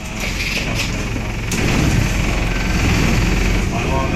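Wright StreetLite Max micro-hybrid single-deck bus pulling away, heard from inside the saloon: a few sharp knocks in the first second and a half, then a low engine rumble that builds and holds as the bus moves off.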